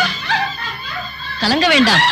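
Distressed voices crying out, a woman's pained wails rising and falling in pitch, with the loudest, longest cries in the second half; a sign of the sudden stomach pain that has made her collapse.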